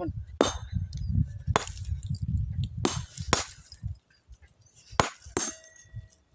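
Small sledgehammer striking rock, about six sharp blows at an irregular pace, each with a brief high metallic ring.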